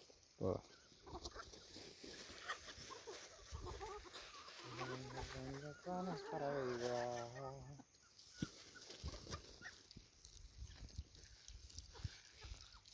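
A flock of chickens feeding on scattered grain, with clucking and light ticks of pecking on the ground. About five seconds in, a drawn-out low voice-like call lasts some three seconds, rising briefly in the middle.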